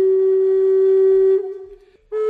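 Intro music: a flute holding one long, steady note that fades away about a second and a half in, closing a melodic phrase.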